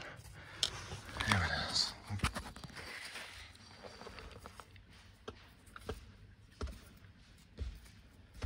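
Scattered light clicks and scrapes of stones and soil being handled while a quartz crystal is worked loose from a dirt-filled pocket by hand.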